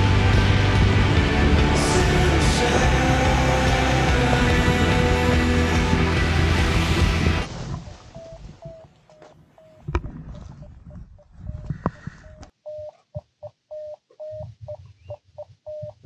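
Background music plays, then cuts off about seven seconds in. Under it is an electronic device giving a short, steady beep that repeats about twice a second, with a couple of sharp knocks from handling gear.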